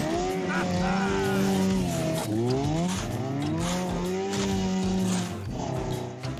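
Cartoon snowmobile engine running hard, its buzzing note held steady and then rising in pitch twice like a motor revving up through the gears.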